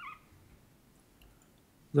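Near-silent room tone with a brief squeak right at the start, then a man starts speaking at the very end.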